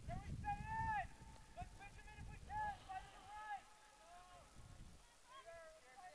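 Distant voices shouting short calls across a soccer field, several in the first three and a half seconds and a few more near the end.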